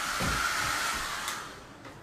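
Hand-held hair dryer running, a rush of air with a steady whine. It is blown straight at the microphone, so it buffets low at first, then dies away about a second and a half in.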